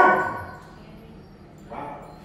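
A standard poodle gives one loud, sharp bark at another dog crowding in for attention, a dominance warning, followed near the end by a shorter, quieter sound.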